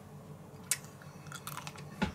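A person biting into a smoked farmer's sausage (Bauernwurst) and chewing it with the mouth closed. There is a sharp click about two-thirds of a second in, then quiet chewing with a few faint clicks.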